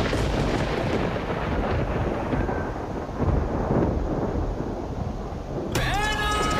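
A deep, rumbling, thunder-like noise from a TV drama's soundtrack, swelling about three seconds in. Near the end a rising sweep leads into music.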